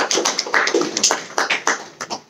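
A small audience clapping, the claps thinning and dying away near the end.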